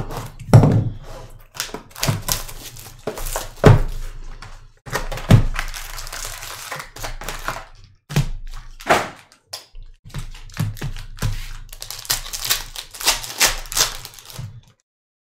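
Cardboard trading-card box and foil card packs handled on a table by gloved hands: a run of knocks and taps, then crinkling of the foil wrappers, with packs being torn open near the end.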